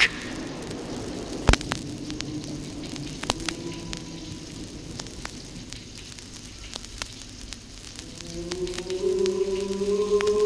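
Vinyl record surface noise: a steady crackle with scattered clicks and one sharp pop about a second and a half in, over a faint low drone. Near the end a pipe organ chord swells in and holds.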